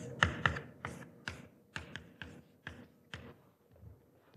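Chalk tapping on a blackboard as a formula is written: about a dozen short, sharp taps at an uneven pace, growing fainter toward the end.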